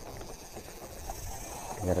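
Quiet outdoor background with a faint, steady high-pitched hum and no distinct events; a man's voice starts right at the end.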